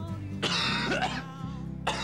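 A person coughs once, hard, after a drag on a cigarette, over soft guitar background music.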